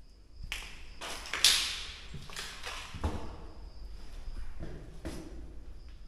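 Irregular knocks and scraping noises, about eight of them, the loudest about a second and a half in, over a faint steady cricket trill.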